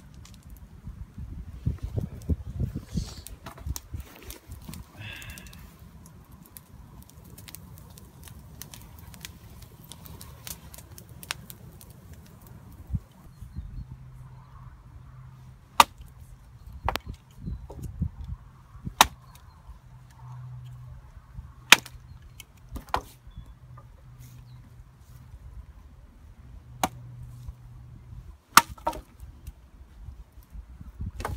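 Hatchet chopping a birch branch: about eight sharp, separate strikes, one every one to four seconds, in the second half. Before them, a low rumble of wind on the microphone with light handling knocks.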